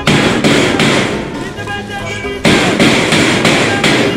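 Electric arc welding on a steel gate frame: a dense crackle that starts abruptly, fades over about two seconds, then starts again about two and a half seconds in and stops just before the end.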